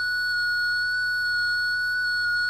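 Small speaker on an Arduino-driven robot playing a steady electronic tone of about 1,450 Hz, its pitch set by the light falling on a light-dependent resistor. It holds one unwavering note because the light level stays steady.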